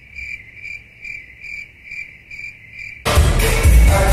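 Crickets chirping in a steady rhythm, about three chirps a second: the stock 'crickets' sound effect for an awkward silence. The chirping cuts off abruptly about three seconds in as loud music and a voice come in.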